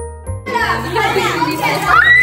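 Gift-wrapping paper tearing and crinkling amid children's excited voices, over background music with a steady bass line. Near the end a child lets out a long, high squeal.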